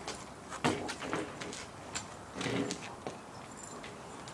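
Scattered sharp knocks and clicks, about half a dozen, with a brief low sound about two and a half seconds in.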